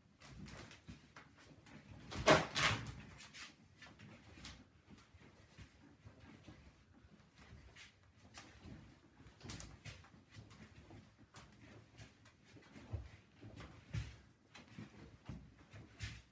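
Quiet, scattered knocks, creaks and shuffles as bare feet step on a wooden floor and a door rattles on its hinge under the pull of a resistance band tied to it. A louder, longer sound comes about two seconds in.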